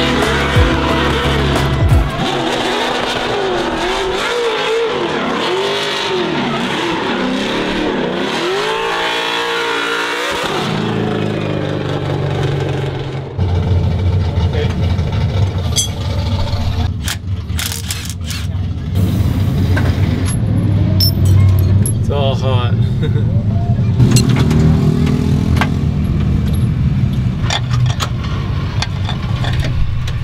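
Nissan 240SX drift car's engine revving up and down in long swoops as it slides through a corner. About thirteen seconds in it gives way to a steady low rumble with scattered sharp clicks and knocks of pit-crew tools.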